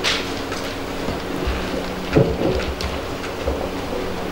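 Handling noise of a live handheld microphone being passed to an audience member: rustling and a few low thumps, the loudest about two seconds in, over a steady hall hum.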